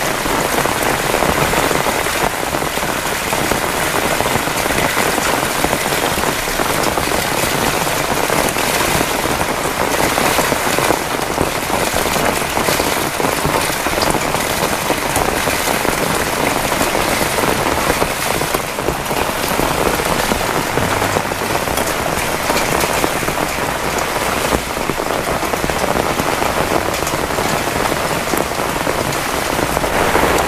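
Heavy rain pouring down steadily on the ground and surfaces, a loud, dense, even hiss.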